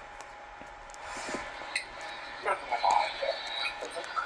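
A person's voice, faint, in short broken snatches of speech, with a few small clicks.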